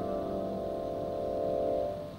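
Soft vibraphone chord ringing on after the strike, its metal bars sustaining a few held notes that slowly fade, with no new strikes.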